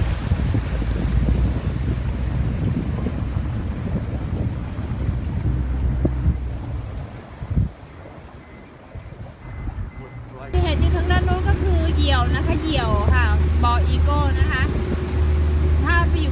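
Boat's outboard motor running steadily under way, with wind on the microphone and water rushing past the hull. The sound drops away for about three seconds past the middle, then comes back with a steady hum.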